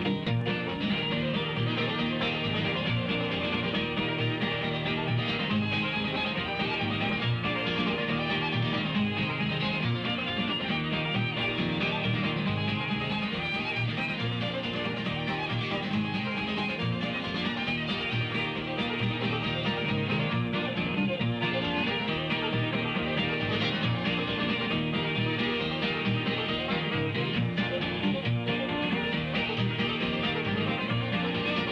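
Bluegrass string band playing a tune, with acoustic guitar and five-string banjo over upright bass. The recording is old and dull, with the treble cut off.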